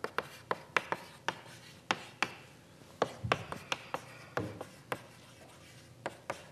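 Chalk tapping and scraping on a blackboard as words are written: a quick, irregular run of sharp clicks, a few a second, with duller knocks about three and four and a half seconds in, stopping near the end.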